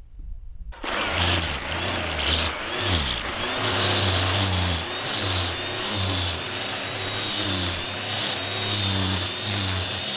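A string trimmer, its head fitted with a homemade loop of cable in place of nylon line, starts suddenly about a second in and runs at speed with a high whine, with repeated swishes about every 0.7 s as it sweeps through grass.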